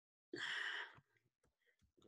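A man's short, breathy sigh, lasting about half a second.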